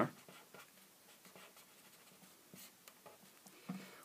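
Faint scratching of a pen on paper in a series of short strokes as a circuit symbol is drawn.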